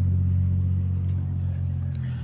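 Steady low mechanical hum of a running motor.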